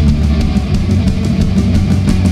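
Punk rock band playing live, loud, with electric guitars, bass and a drum kit in an instrumental passage without singing.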